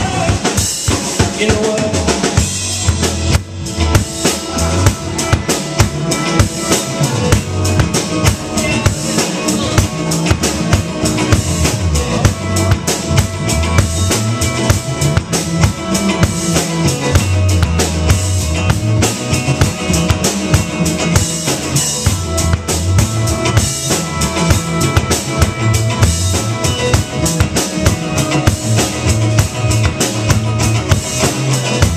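Live rock trio playing an instrumental passage: a drum kit with busy kick, snare and rimshots over electric bass and electric guitar, with no vocals.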